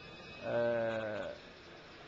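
A man's hesitant drawn-out "aah", held at a steady pitch for just under a second, starting about half a second in.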